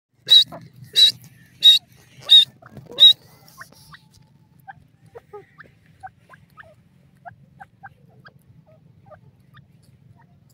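Grey francolin calling: five loud, shrill calls about two-thirds of a second apart in the first three seconds, then many faint, short chirps for the rest of the time.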